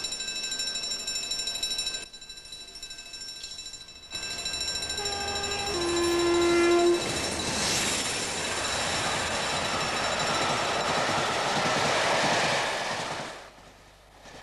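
Diesel locomotive sounding its two-tone horn as it approaches, a short higher note and then a longer lower one. Then the loud noise of the train passing close by the platform, which cuts off shortly before the end.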